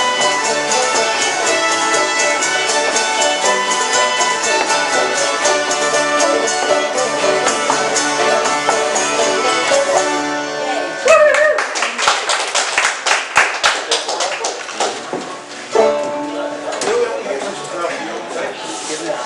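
Old-time string band of fiddles, guitar, banjo and upright bass playing a tune that ends about ten seconds in. Then a few seconds of hand clapping and a voice or two.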